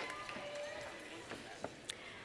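Audience voices and held cheers trailing off in a large hall, with a few sharp clicks near the end.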